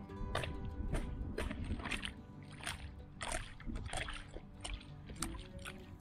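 A knife blade chopping at thin ice and slush in a small hole in lake ice, giving a string of irregular light knocks and wet sloshes, about two a second, under quiet background music.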